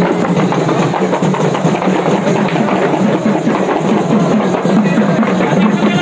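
A group of large hand-held frame drums (dafs) struck together in a fast, steady, dense rhythm.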